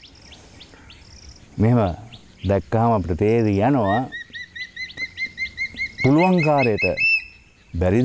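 A bird calling: a quick, even series of short upswept notes, about five a second, for some three seconds from about four seconds in, with a few fainter high calls in the first second.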